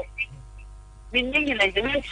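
A steady electrical hum, made of many even tones, fills a brief pause in speech. A voice starts talking again about halfway through.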